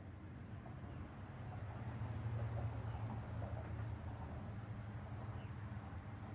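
A low steady hum that swells about two seconds in and then eases off, over faint background noise.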